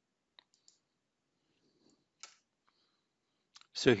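Near silence broken by a few faint, short clicks, then a man starts speaking just before the end.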